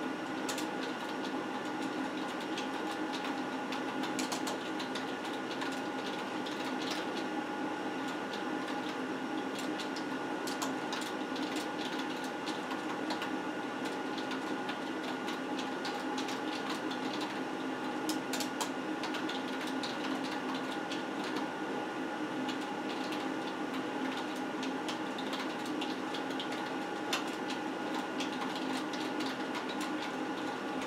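Typing on a computer keyboard: quick, irregular key clicks in bursts over a steady electrical hum.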